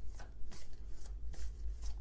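A tarot deck being shuffled by hand: a run of quick, irregular card flicks.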